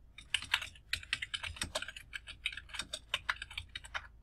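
Computer keyboard being typed on: a quick, uneven run of key clicks as a short terminal command is entered, starting about a third of a second in.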